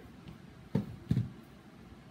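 Two short, dull thumps about a third of a second apart as a small portable speaker is set down on a table.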